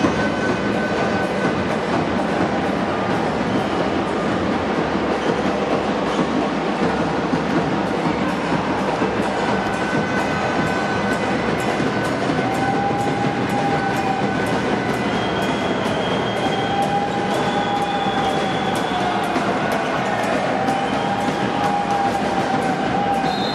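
Steady, dense din of a basketball game in an echoing sports hall. From about halfway through, a few long, wavering tones sound over it.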